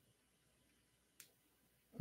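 Near silence: room tone, with one faint, sharp click a little after a second in.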